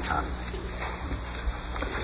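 The end of a man's spoken word, then the steady hum and hiss of an old archival recording, with a few faint ticks.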